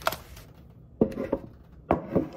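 Dishes being handled on a table: a sharp knock at the start, two clinks about a second in, and another clink near the end.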